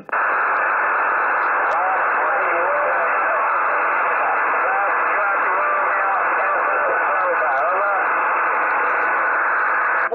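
Radio receiver's loudspeaker giving out steady band static, with a weak, distant station's voice just audible under the hiss, giving his name. The hiss comes on and cuts off abruptly as the transmissions switch.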